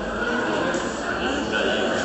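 Many people talking at once, an indistinct crowd chatter.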